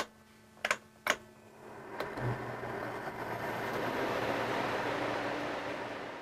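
Three clicks of the rooftop air conditioner's ceiling-assembly selector knob being turned, then the Coleman Mach 8 RV air conditioner's blower starting up with a steady rush of air and a low hum that builds over a couple of seconds and fades near the end.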